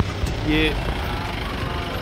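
Steady low rumble of street traffic, vehicle engines running along a city road.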